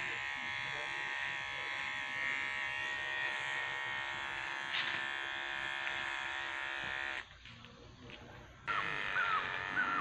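Electric hair clippers buzzing steadily against the hair at the back of the neck, cutting out about seven seconds in. Near the end a crow caws several times.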